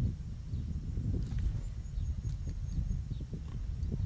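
Wind buffeting the microphone in an uneven, gusting rumble, with a few faint light ticks over it.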